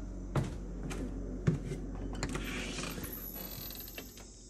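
Footfalls and knocks: one about half a second in, a sharper one about a second and a half in. Then a door is opened onto an outdoor deck with a creak and scrape, and crickets become faintly audible near the end.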